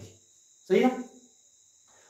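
A man's brief spoken remark in a lecture pause, otherwise very quiet apart from a faint, steady high-pitched hiss in the background.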